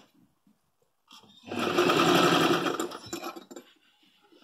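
Sewing machine stitching in one short burst of about two seconds, starting about a second and a half in and tapering off to a stop, after a brief click at the very start.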